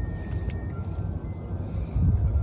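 Low wind rumble on the phone microphone, with faint background music of soft held notes that shift in pitch.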